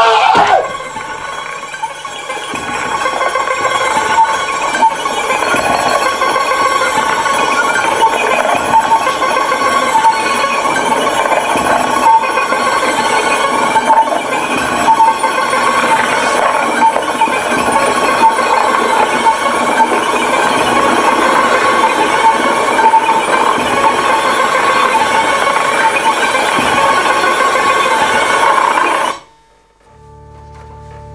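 Theatre sound-effects cue over the house speakers: a loud, dense clanking, mechanical din with steady ringing tones and a short high beep repeating over it. It cuts off abruptly just before the end, as the stage goes to blackout.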